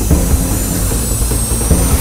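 Logo-intro sound effect: a noisy whoosh, slowly rising in pitch, over a low rumble, building up.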